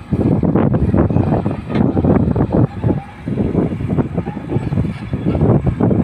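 Kobelco hydraulic excavator running under load as it lowers a slung concrete sheet pile, a loud, rough, uneven noise that dips briefly about halfway through.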